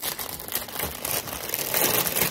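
Thin clear plastic bag holding a set of pant hangers crinkling and rustling as it is handled, getting louder near the end.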